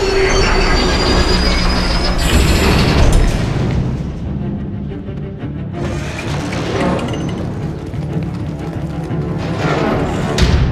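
Film soundtrack: dramatic orchestral score under action sound effects. In the first few seconds there is a high metallic screech with a noisy grinding rush and two heavy crashing impacts, then the effects die down to low, tense music with one smaller hit.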